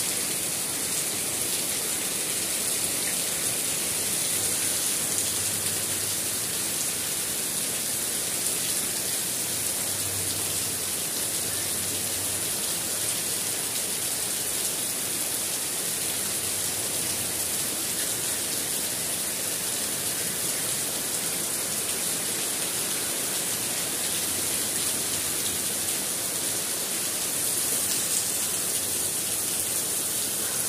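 Steady rain falling on dense garden foliage: an even, unbroken rush of noise that holds at the same level throughout.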